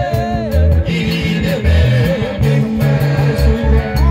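Live band music played through loudspeakers: a man singing into a handheld microphone over a steady bass line, guitar and keyboard, with light percussion keeping the beat.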